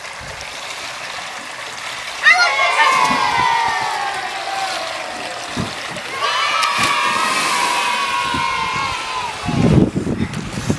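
Two long, drawn-out yells from a child, each held about three seconds and sliding slowly down in pitch, over a steady water hiss.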